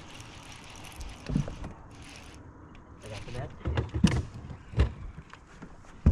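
Scattered knocks and thumps against a small aluminum boat as a hooked bass is fought and landed, the heavier ones about a second and a half in, around four seconds in and just before five seconds.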